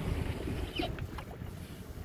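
Wind buffeting the microphone as a low, steady rumble, with a few faint clicks about a second in.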